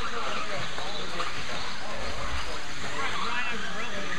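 Steady din of an indoor RC racing hall, with indistinct background voices talking over it.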